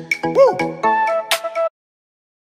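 Outro music: a short phrase of pitched electronic notes with one note swooping up and down, stopping abruptly near the end and leaving silence.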